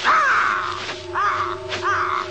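Cartoon buzzard character squawking: three short cawing cries, the first and loudest right at the start, the other two close together in the second half, over steady held tones.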